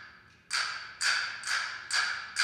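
Castanets clicking in an even beat, about two strokes a second, starting about half a second in after a brief silence. Each click is sharp and dies away quickly.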